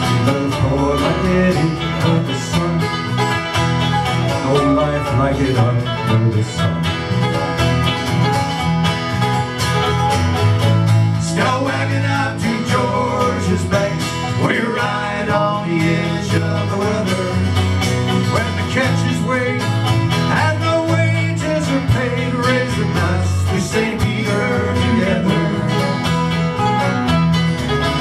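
Live acoustic string band of mandolin, banjo and acoustic guitar playing an instrumental break between verses of a bluegrass-style folk song.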